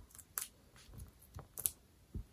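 Faint small ticks and clicks of fingernails picking the paper backing off a foam adhesive dimensional, with two brief clicks standing out, about half a second in and near the end.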